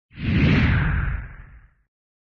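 A whoosh sound effect with a low rumble under it, part of a logo intro. It swells up quickly, then fades away over about a second and a half.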